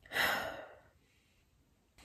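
A woman sighing: one breathy exhale of about half a second, then silence.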